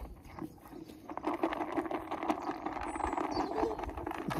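A Zwartbles ewe eating feed from a plastic bucket: rapid crunching and rustling that thickens about a second in.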